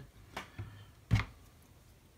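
One faint, short click from fingers handling a small plastic miniature part, with otherwise only quiet room tone.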